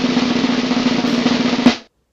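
Snare drum roll sound effect: a fast, steady roll that ends on one sharp accented hit near the end.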